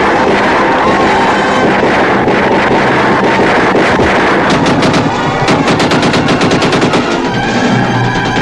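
Gatling gun firing a rapid string of shots, most even and closely spaced from about four and a half to seven seconds in, over film music.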